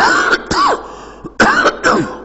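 An elderly man coughing into his fist: four short coughs in two pairs.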